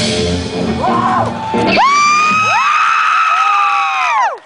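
A live rock band's closing sound cuts off a little under two seconds in, and audience members whoop in its place: several long, high 'woo' yells that overlap, hold and die away near the end.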